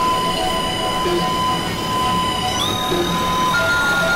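Experimental synthesizer drone music: several sustained high tones held over a noisy low rumble, with short low blips every second or two. About two-thirds of the way in, the tones glide up a step and a new tone enters soon after.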